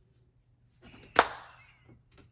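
Full curly wig being shaken and flipped close to the microphone: a rustling swish starts just under a second in and peaks in one sharp knock, then fades off as a rustle.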